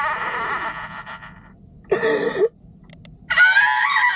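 A man's exaggerated fake crying: a wavering wail trails off, then comes a short sob about two seconds in and another loud wailing outburst near the end.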